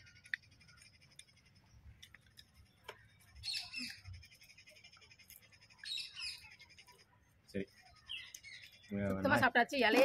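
Birds chirping outdoors: two short bursts of high calls about three and a half and six seconds in, over a faint high trill that runs on underneath.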